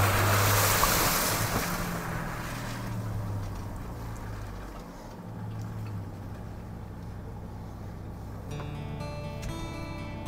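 Ford Bronco Raptor's twin-turbo V6 running at low speed on a waterlogged dirt trail, a steady low engine hum with tyre and water noise that is louder for the first couple of seconds and then fades. Music fades in near the end.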